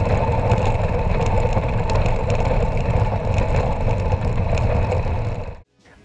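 Gravel bike descending fast over washboard corrugations and loose gravel, with the tyres crunching and the bike and its camera mount rattling continuously over a low rumble. The sound cuts off suddenly near the end.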